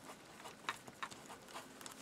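Double-line outline pen writing cursive letters on paper: faint, short strokes of the pen tip.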